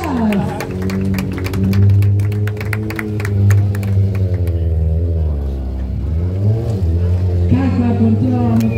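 Yamaha sport motorcycle engine running under the rider, its revs dipping and then rising again past the middle. A quick run of sharp clicks fills the first few seconds, and music plays alongside.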